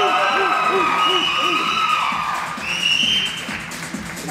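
Audience cheering and shouting with high-pitched screams over upbeat dance music. The cheering is loudest in the first half and eases off toward the end.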